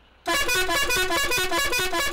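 A tourist bus's banned multi-tone musical air horn sounding loudly, playing a quick run of notes that step up and down in pitch. It starts suddenly about a quarter second in.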